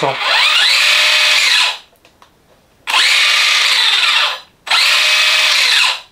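Traxxas Rustler 4x4 BL-2S brushless motor and drivetrain whining as the throttle is squeezed three times with the wheels spinning in the air. Each run lasts about a second and a half, holds a steady pitch, then winds down; the first rises in pitch as it starts. The speed control is in its 50% power mode, which keeps the truck gentle, "super doux pour un gamin".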